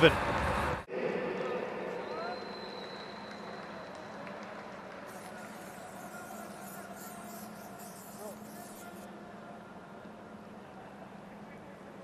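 Stadium ambience from a match played before empty stands: faint, distant shouts from players over a low, steady hum. A louder stretch in the first second cuts off suddenly.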